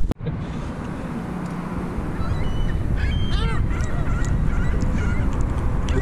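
Gulls calling in a quick run of arched, honking calls about three seconds in, over a steady low rumble.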